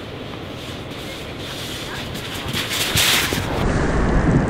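Outdoor rushing noise of wind buffeting the microphone. It swells and grows harsher about three seconds in, then changes abruptly near the end.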